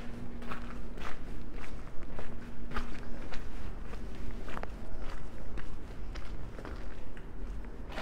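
Footsteps on a cobblestone street, a steady walking pace of about two steps a second.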